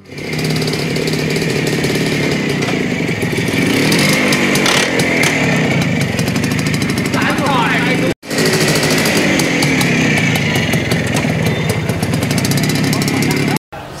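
Minsk 125 cc two-stroke, single-cylinder, air-cooled motorcycle engine running and revving as the bike is ridden, its pitch rising and falling. The sound cuts out abruptly for a moment about eight seconds in and again near the end.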